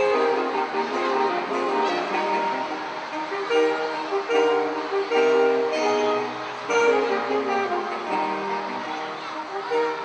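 Saxophone quartet, baritone saxophone included, playing a piece together in close harmony, with several notes held at once and changing about every half second to a second.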